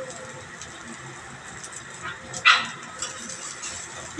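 Metal spatula working on a flat-top griddle cooking burger patties: a faint steady sizzle with light scrapes and clicks, and one short, loud sharp sound a little past halfway.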